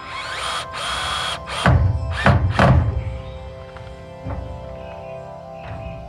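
Cordless drill driving a screw into a timber frame brace: a steady run of about a second and a half, then three short, louder bursts. Background music plays under it.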